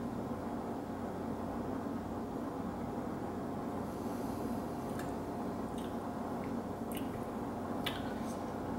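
Steady low room hum while a man sips and tastes neat gin, with a few faint short clicks in the second half: mouth sounds of tasting and a stemmed glass being set down on its coaster.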